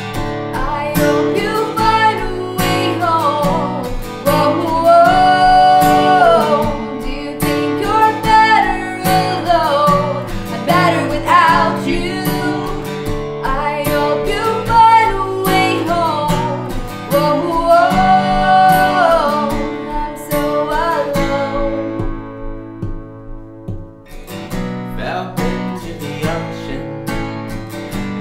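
Strummed acoustic guitar under a woman's sung melody. About three quarters of the way through the singing stops and the guitar plays on alone for a couple of seconds before the music picks up again.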